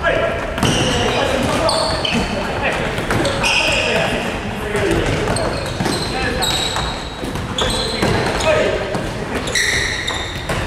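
Futsal balls being kicked and trapped on a hardwood gym floor: repeated kicks and thuds echoing in a large hall, with short high shoe squeaks and indistinct players' voices.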